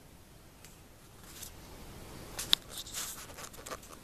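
Faint scratching and rustling of a hand-held camera being handled, with one sharp click about two and a half seconds in.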